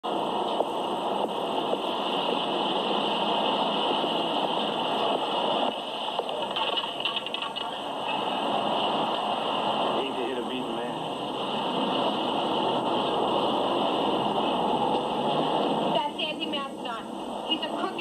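Crowd noise: many people talking and calling out at once in a steady babble, thinning about sixteen seconds in to a few separate voices.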